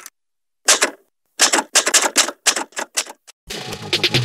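Typewriter keys clacking: a few strokes, a short pause, then a quick, uneven run of strokes. Music starts just before the end.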